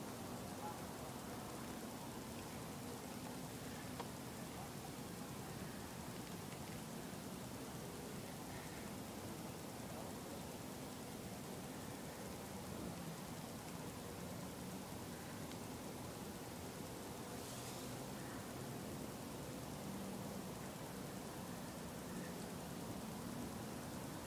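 Faint, steady hiss of background noise with no distinct events.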